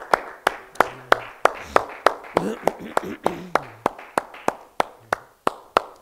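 One person clapping hands in a steady rhythm, about three claps a second, growing gradually softer and stopping just before the end.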